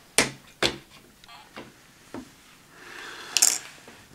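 Handling of a plastic toy figure: two sharp plastic clicks in the first second, a few fainter taps, then a short rustle and scrape near the end as hands take hold of it.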